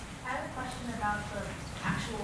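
Faint, indistinct speech of a person asking a question from the audience.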